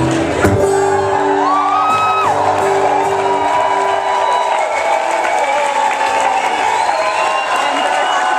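A final strummed chord on an acoustic guitar rings out for a few seconds, and an audience cheers, whoops and whistles over it and after it.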